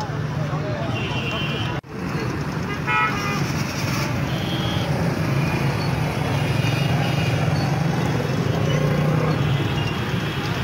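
Street traffic noise: vehicle engines running with a steady hum under people's voices, and a vehicle horn tooting about three seconds in. The sound cuts out for a moment just before two seconds.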